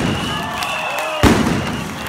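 Stage pyrotechnics firing in a large hall: a loud bang a little over a second in, with a rushing, echoing hiss and high whistling tones around it.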